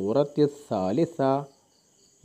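A man's voice speaking in short phrases for about the first second and a half, then a pause. A faint, steady high-pitched whine sits underneath.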